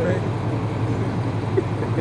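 A man laughing briefly near the end over a steady low background hum.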